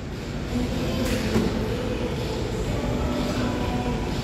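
Steady low rumble of a gym's room noise, with a faint hum and a couple of light knocks about a second in.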